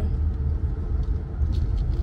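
Steady low rumble of a running car heard from inside the cabin, engine and road noise with no other event standing out.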